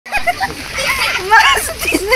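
A high-pitched voice over the patter and splash of rain on a wet road.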